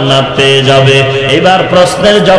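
A man's voice chanting in long held notes that slide between pitches, the melodic intoned delivery of a Bengali waz sermon.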